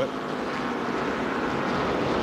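Modified race cars' V8 engines running at full speed down the straightaway, a steady drone.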